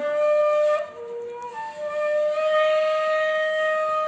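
Shakuhachi, a Japanese bamboo flute, playing slow held notes. A sustained note gives way to a brief lower note about a second in, then one long held note.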